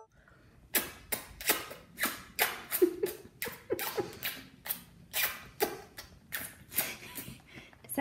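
Wet lip smacks from sucking on a lollipop, a quick run of sharp smacks about two or three a second with a short hum of enjoyment now and then.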